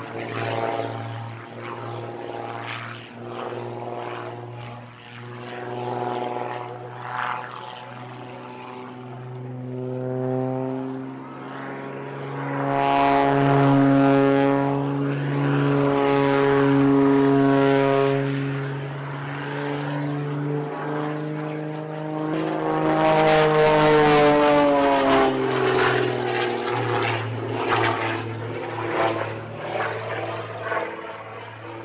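Extra 330 aerobatic plane's piston engine and propeller droning overhead as it manoeuvres, the pitch rising and falling with power and speed. It is loudest about halfway through, and again a few seconds later, where the note bends down as the plane passes.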